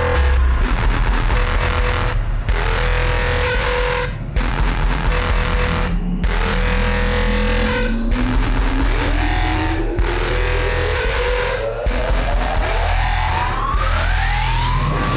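Electronic dance music in a build-up. A synth riser climbs steadily in pitch through the second half, and the whole track cuts out for a moment about every two seconds.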